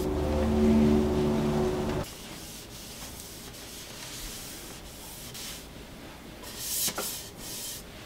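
Cloth wiping down a carbon bike frame, a soft rubbing that is clearest near the end. In the first two seconds there is a steady droning hum with several held tones, which cuts off suddenly.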